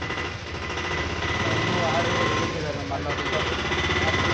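People talking over a steady, rapid mechanical rattle.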